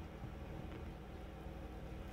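Quiet, steady background noise with a low rumble: room tone, with no distinct cutting, scraping or knocking sounds.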